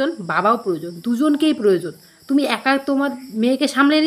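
A woman talking in Bengali in short, emphatic phrases, with a faint steady high-pitched tone underneath.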